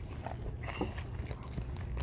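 Close chewing and mouth sounds of children eating soft baked pasta, with scattered small wet clicks.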